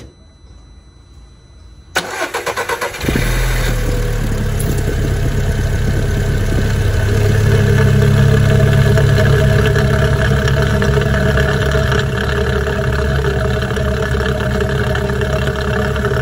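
Volkswagen four-cylinder car engine cold-started for the first time of the day, heard close up at the open oil-filler neck over the camshaft. About two seconds in the starter cranks for about a second, then the engine catches and runs at a steady fast idle. These first seconds of running come before oil has reached the camshaft, the moment of greatest engine wear.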